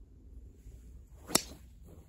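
A golf swing with a fairway wood (spoon): a whoosh building through the downswing, then one sharp, loud crack as the clubface strikes the ball about one and a third seconds in.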